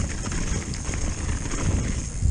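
A mountain bike rattling and jolting over a rough dirt trail at speed, with tyres on dirt, many quick uneven knocks and a low rumble of wind on the camera microphone.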